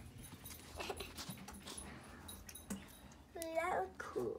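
A short whimpering cry with a wavering pitch near the end, among faint scattered clicks and rustles.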